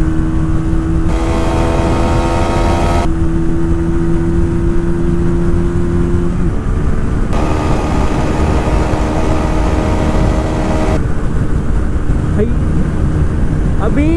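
TVS Apache RTR 160 2V's single-cylinder engine held at high revs in top gear near its top speed, a steady engine note with little change in pitch, over heavy wind rush on the microphone. The note shifts slightly about six and a half seconds in.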